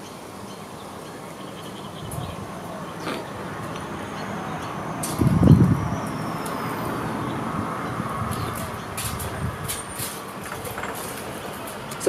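Road traffic: a vehicle passing, its noise swelling over several seconds and then easing, with a louder low rumble about five seconds in.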